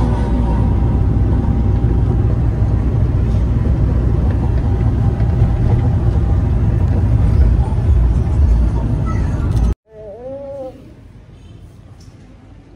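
Road and engine noise inside a moving vehicle's cabin: a loud, steady low rumble that cuts off suddenly near the end, leaving a much quieter room with a brief faint sound.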